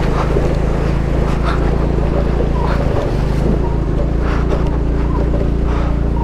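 TVS Jupiter scooter's 110 cc single-cylinder engine running steadily at low speed over rough gravel, with wind and road noise over it.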